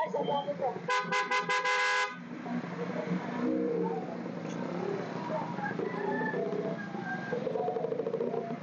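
A vehicle horn honking in a quick string of short toots about a second in, lasting about a second, over a background of voices.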